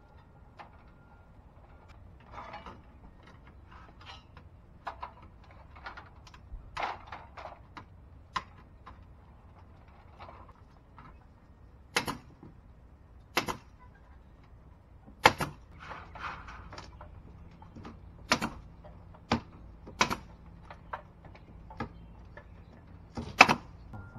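Soffit panels being handled and fastened overhead: light clicks and rustling of the panels in the first half, then about six sharp single knocks, a second or two apart, in the second half.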